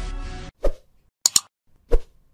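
Logo sting music fading out and cutting off about half a second in, followed by short pop sound effects from an on-screen animation: a single pop, a quick double click, then another pop near the end.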